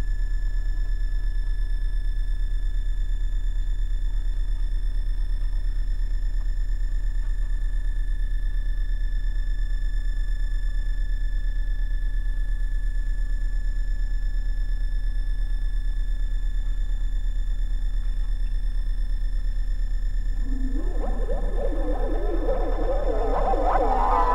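Synthesizer holding a steady, very deep sine-like drone, with faint steady high tones above it. About three seconds before the end, a wavering, pitch-bending synth sound swells in on top.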